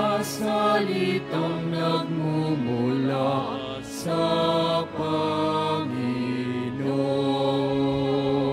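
A slow hymn sung with long held notes that change pitch every second or two.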